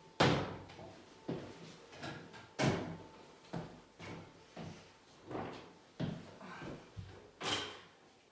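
A series of irregular knocks and bumps, about nine in all, from decorating gear being handled while a paste roller is fetched; the loudest come just after the start, about two and a half seconds in, and near the end.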